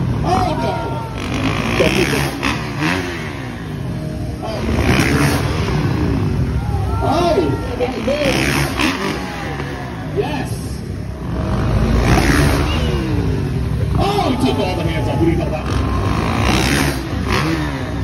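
Dirt bike engines revving hard again and again, the pitch rising and falling with each burst of throttle as freestyle motocross riders launch off the ramp and jump, with voices mixed in.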